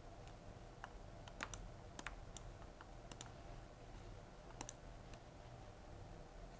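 Faint, scattered clicking at a computer: about eight light mouse and key clicks, some in quick pairs, as a currency dropdown is worked and a settings dialog is confirmed.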